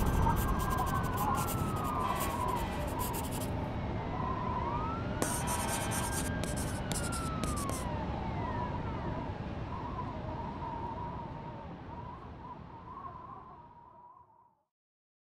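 Distant siren wailing in two slow rise-and-fall sweeps over a low city rumble, the whole fading out toward the end.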